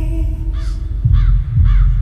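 Crow cawing three times, about half a second apart, over a deep low drone in the soundtrack; a held sung note fades out at the very start.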